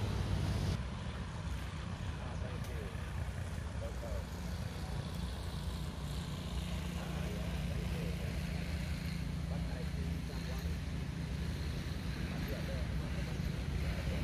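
A low, steady engine rumble, with faint voices in the background.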